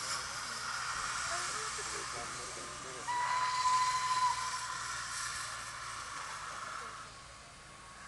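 Steam locomotive hissing steam, with one short, steady steam-whistle blast a little after three seconds in.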